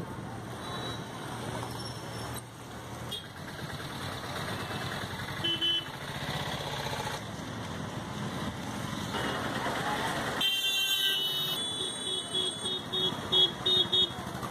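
Street traffic with vehicles passing and horns sounding. Near the end there is a quick run of short, high beeps.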